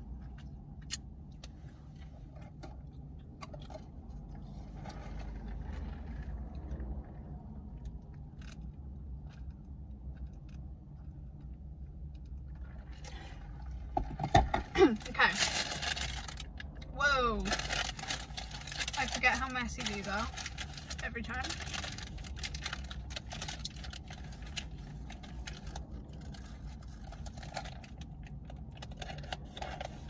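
Paper taco wrapper rustling and crinkling, loudest for several seconds about halfway through and then quieter handling, over a steady low hum.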